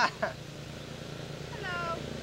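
A young child's high-pitched vocalizing: a short sound just after the start and a falling call near the end.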